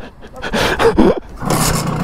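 A man's short groan, then about one and a half seconds in a Simson moped's two-stroke single-cylinder engine is kick-started. It catches and settles into a steady idle.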